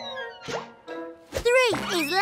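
Cartoon soundtrack: light music with comic sound effects. A slowly falling glide and a short plop come first, then two quick swooping rise-and-fall sounds in the second half as a small block character leaps.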